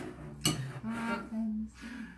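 A metal spoon clinking and scraping against crushed ice in a glass, with a sharp clink about half a second in.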